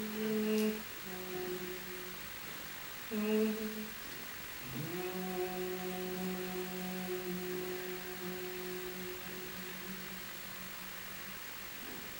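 A woman humming long, low, steady notes with her lips closed: two short notes, then one that slides up and is held for about six seconds.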